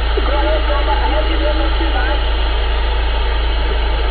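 CB radio receiving a weak long-distance station: a steady hiss of static with a faint voice buried in it, barely readable.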